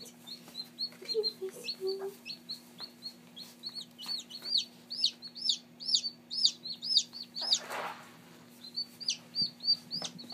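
Newly hatched Black Copper Marans chick peeping in a fast series of short, high cheeps, loudest and busiest in the middle, with a lull just before the end. A brief rustle comes near the eight-second mark.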